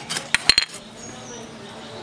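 Small plastic dish set down on a concrete floor: three quick clatters with a brief ring about half a second in.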